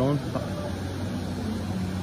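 A steady low machine hum over a constant background rush, unchanging throughout.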